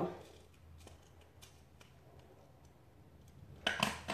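Faint scattered clicks and taps of small makeup items being handled, over a steady low hum, with a quick cluster of sharper clicks near the end.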